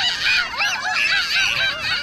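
Many overlapping high chattering, monkey-like calls from several voices, each a short rising-and-falling hoot, starting abruptly as the music cuts off.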